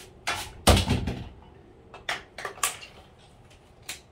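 A series of short knocks and clicks, the loudest a thump just under a second in, with a few lighter clicks after it.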